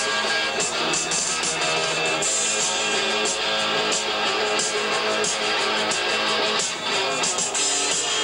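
Live rock band playing: electric guitars, bass guitar and drums.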